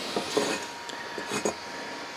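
A few light clinks and taps of metal parts being handled on a workbench, the clearest a pair of sharp ticks about one and a half seconds in.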